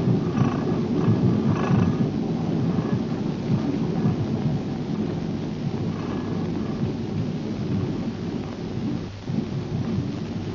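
Low, steady rumble of a moving train carriage, easing off slightly toward the end.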